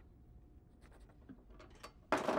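Near silence, with a few faint clicks and rubs as jack-in-the-box toy boxes are handled, about five small ticks in the second half.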